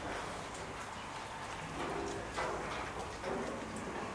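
Steady rain falling on a wet enclosure, with a few faint brief sounds between about two and three and a half seconds in.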